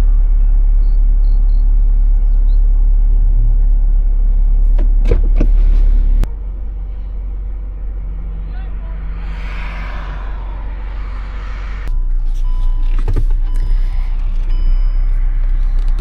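Idling car engine heard from inside the parked vehicle's cabin, a steady low rumble that drops sharply about six seconds in and picks up again a little before the end, with a few light knocks.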